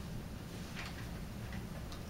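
Quiet meeting-room tone: a steady low hum with a few faint, unevenly spaced ticks.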